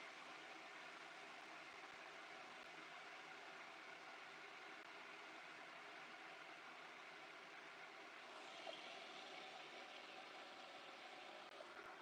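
Near silence: faint steady room tone.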